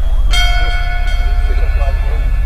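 A bell tone struck once about a third of a second in, ringing on and slowly fading over a low pulsing drone, as a stage music performance begins.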